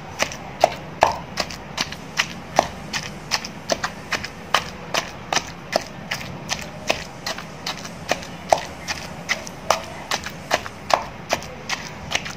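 A pestle pounding a chopped green mixture with chilies in a mortar, in steady, even strokes of about three a second, each a short knock.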